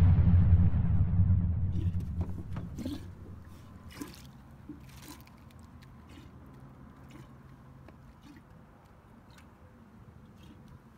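A loud low whoosh with a steady low tone fades out over the first two to three seconds. After that come faint scattered ticks and small water drips as a crappie is lifted from the water on the line.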